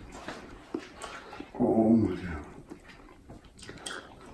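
A man's short wordless moan, made with his mouth closed, about halfway through, as he chews a mouthful of habanero-spiced aguachile. A few small clicks of chewing come before and after it.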